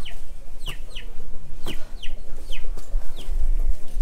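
Chickens calling: a run of about seven short, high-pitched, downward-falling calls, roughly two a second, over a low background hum, with a brief low rumble near the end.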